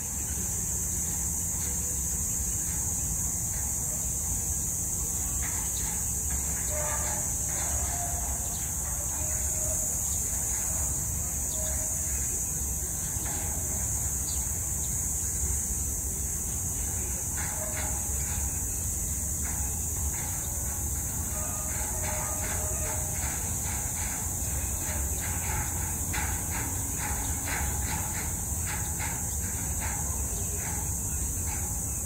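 Steady background noise: a constant low rumble under an even high hiss. Faint short tones come and go, and a faint ticking, about twice a second, runs through the second half.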